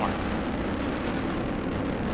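Steady low rumble of the Delta IV Heavy rocket's three RS-68A engines in flight.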